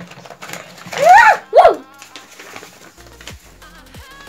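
Two short, loud squeal-like calls that rise and fall in pitch, about a second in, then background music with a steady beat starting near the end.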